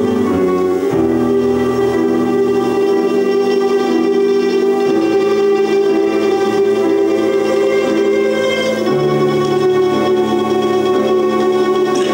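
An ensemble of domras playing a slow melody in long held notes. The harmony shifts every few seconds.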